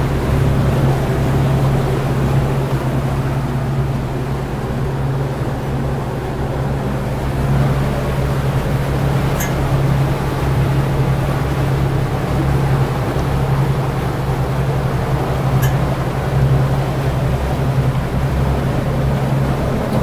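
Steady low drone of a power catamaran's engines heard from inside its enclosed helm while under way, with two faint brief clicks partway through.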